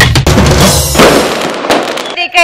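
A TV show's logo-transition sound effect over the tail of the music: two loud bursts, one at the start and one about a second in, each fading away.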